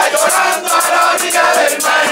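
Plena: a crowd of voices singing together in chorus over the steady, quick beat of panderos, the hand-held frame drums of Puerto Rican plena.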